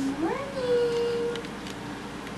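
A person's voice drawing out "morning" in a sing-song greeting, rising in pitch and then held for about a second.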